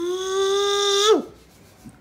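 A person's voice holding one long, steady, fairly high wordless note for about a second, dropping in pitch as it ends, followed by quiet.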